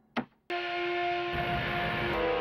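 A switch on a small control box clicks once, and a moment later a machine starts abruptly with a steady electric hum, joined about a second later by a low rumble.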